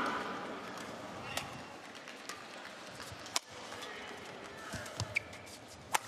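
Badminton rally: sharp racket strikes on the shuttlecock about once a second, the loudest about halfway through, with a few short shoe squeaks on the court near the end over a low hum from the arena crowd.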